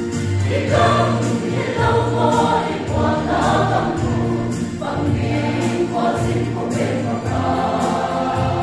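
Mixed choir of young men and women singing a gospel song together in full voice, rehearsing it.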